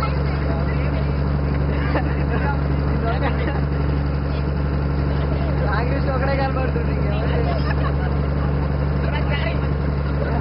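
A boat's engine runs with a steady low drone that does not change in pitch, and faint voices of young men come through above it.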